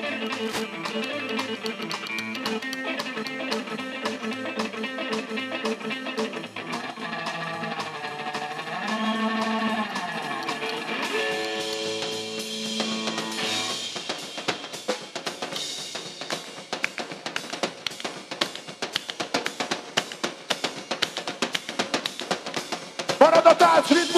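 Live rockabilly band playing: electric guitar and upright double bass over a drum kit. About halfway through the guitar and bass drop out and the drums carry on alone with rapid, regular strikes.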